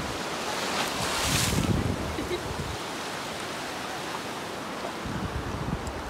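Surf washing on a beach, with wind buffeting the microphone; a louder rush about a second and a half in.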